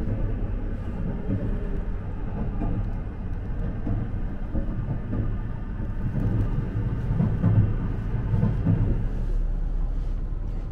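Running noise of the Nankai 50000-series rapi:t electric train, heard from inside the car at speed: a steady low rumble of wheels on the rails, a little louder from about six to nine seconds in.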